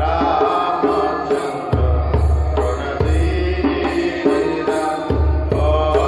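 Hindu devotional kirtan: a sung chant of Rama's names, with percussion strokes and a low sustained bass underneath.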